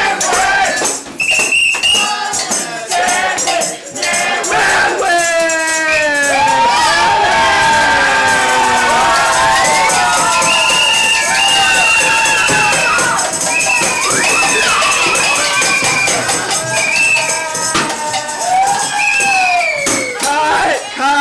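Lively music with several voices singing and calling out over one another, and a jingling, shaken percussion running all through.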